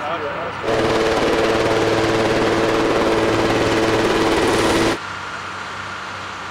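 Helicopter heard up close: a fast, even chop of the rotor blades over a steady turbine whine. It starts abruptly about a second in and cuts off abruptly near the five-second mark, leaving a quieter steady background.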